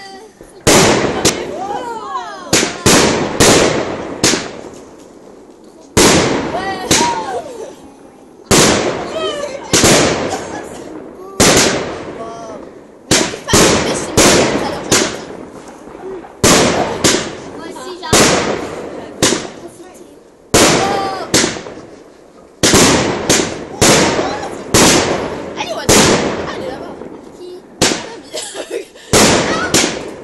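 Consumer fireworks going off one after another: a long run of sharp bangs, roughly one every one to two seconds, each followed by a short crackling tail.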